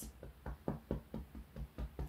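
Fingertips tapping rhythmically on the body in an EFT tapping sequence: about ten light, quick taps, roughly five a second.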